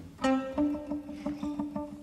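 Guitar played live: a plucked chord rings out, then a quick run of short repeated notes, about six a second.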